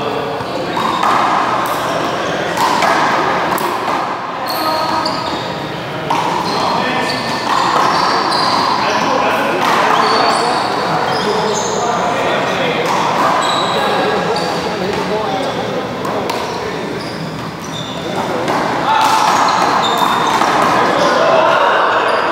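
Handball game in an echoing indoor hall: sharp smacks of the rubber ball off gloved hands and the wall, short high squeaks of sneakers on the court floor, and indistinct voices of the players.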